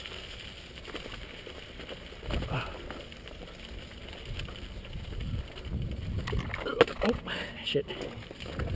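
Mountain bike riding over rocky dirt singletrack: tyres rolling and crunching over dirt and stones, with the bike rattling and rumbling, and a few sharp knocks near the end as it goes over rock.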